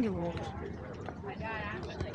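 Outdoor market ambience: a man's voice trails off at the start, then faint voices murmur over a low steady background hum.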